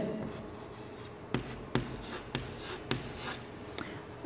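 Chalk writing on a blackboard, faint, with a handful of short sharp taps and strokes as figures are written.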